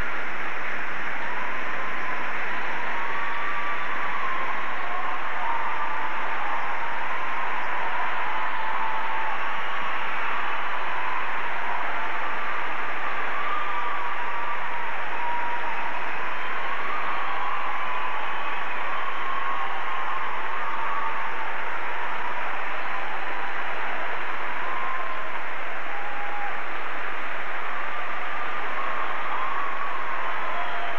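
Audience applauding, a steady wash of clapping, with a faint melody underneath.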